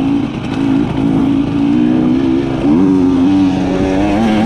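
Husqvarna TE300i single-cylinder two-stroke enduro bike running under way at a fairly steady pitch, with a short rise in revs about three seconds in.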